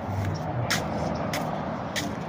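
Road traffic running steadily from a nearby street, with footsteps scuffing on concrete about every 0.6 s.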